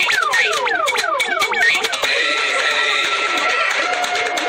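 Added sound effect: a rapid run of about seven overlapping falling whistle-like glides in the first two seconds, followed by steady held tones over music.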